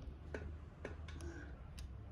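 About five light, irregularly spaced clicks and taps from hands handling things close to the microphone, over a steady low hum.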